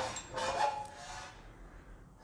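Steel leaf-spring U-bolt plates being handled against each other and the sheet-metal bench: a metal-on-metal scrape with a brief squealing ring that fades out within the first second and a half.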